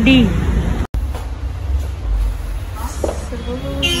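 Low, steady rumble of road traffic under a voice that finishes speaking at the start, with a brief dropout about a second in.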